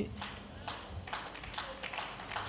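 A few soft, short taps about half a second apart.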